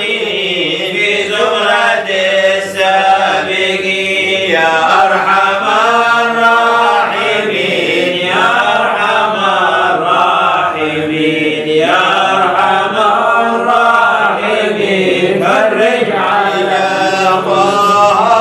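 Unaccompanied Arabic devotional chanting of a qasida, a man's voice singing long held notes that bend slowly up and down, with no instruments.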